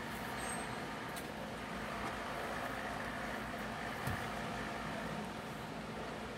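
Steady low machine hum with a hiss over it, with a single soft knock about four seconds in.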